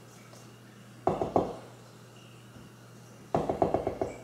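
A spatula clattering against a hand mixer's metal beaters and a stainless steel mixing bowl while cake batter is scraped off. It comes as two short bursts of quick knocks, the first about a second in and a longer one near the end.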